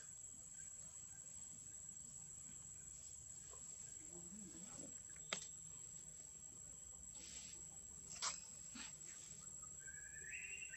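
Faint outdoor ambience: a steady, high-pitched insect drone, with two sharp clicks, one about five seconds in and a louder one about eight seconds in.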